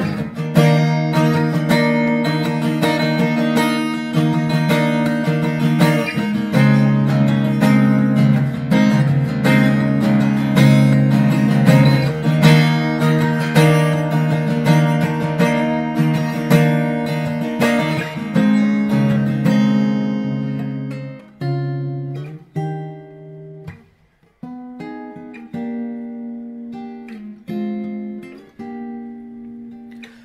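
Solo acoustic guitar with a capo, played as an instrumental break: steady strummed chords for most of the time, thinning about two-thirds of the way through to sparser picked notes and chords, with a brief near-silent gap between them.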